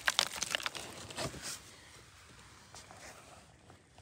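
A few short scrapes and knocks on rock and gravel in the first second and a half.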